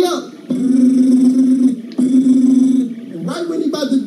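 A man's voice holding two long, steady, low notes, each about a second, with a short break between them, a drawn-out vocal effect rather than ordinary words.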